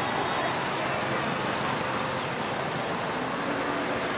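Steady street ambience: traffic noise with indistinct voices in the background.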